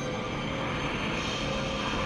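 Steady, eerie drone from a horror film's soundtrack: a dense noisy wash with several high tones held underneath, without beat or change.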